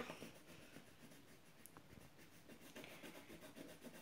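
Faint scratching of a pencil on paper, colouring in a drawing with quick repeated strokes.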